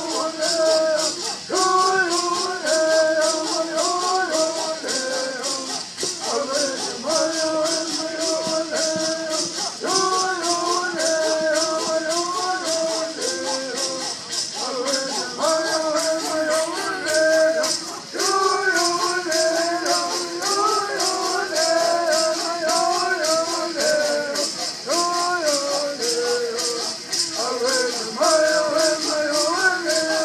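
Southern California bird singing: a group of men singing in unison over gourd rattles shaken in a steady, fast beat. The melody comes in repeated phrases with short breaks between them, while the rattles keep going.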